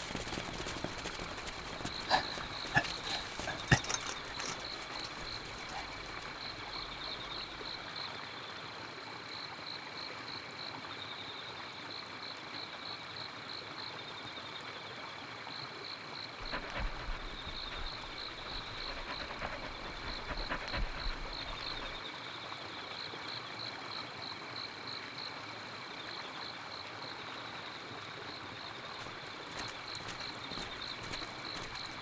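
Night ambience: a steady chorus of chirping frogs and insects, the chirps coming in short repeated high trills. A few rustles and footfalls in brush come through in the first few seconds.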